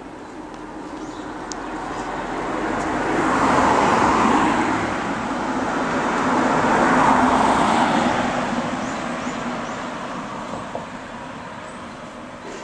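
Road traffic passing: a vehicle's noise rising to a peak about four seconds in, swelling again around seven seconds, then fading away.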